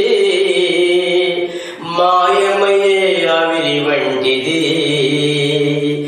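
A man's voice singing a slow Christian devotional song in a chant-like style, holding long notes over steady sustained accompaniment. The voice breaks briefly a little under two seconds in.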